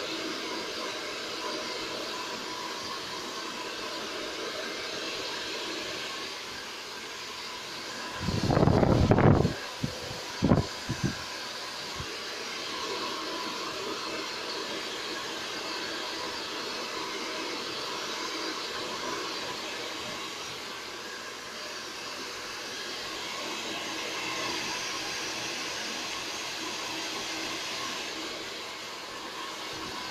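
Handheld hair dryer running steadily as hair is blow-dried over a round brush. About eight seconds in there is a brief, much louder low rumble lasting about a second, followed by a few short knocks.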